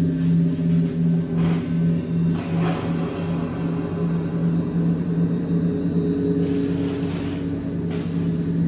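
Sustained ambient drone from an effects-pedal setup: a low tone pulsing about three times a second under steady higher tones, with a few faint hissy swells drifting over it.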